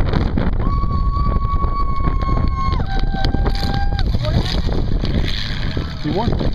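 Demolition derby car engines and wind rumbling on the microphone. A steady pitched tone starts about half a second in and holds for about two seconds, then steps down to a lower two-note tone for about another second.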